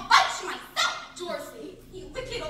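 A dog barking, two sharp barks about a tenth of a second in and again near the three-quarter-second mark, with voices around them.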